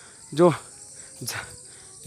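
Steady high-pitched insect chorus in forest undergrowth, with one spoken word near the start and a brief soft noise a little past halfway.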